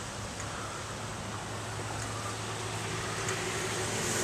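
Steady traffic noise from a nearby highway: a continuous rush with a low hum, growing slightly louder toward the end.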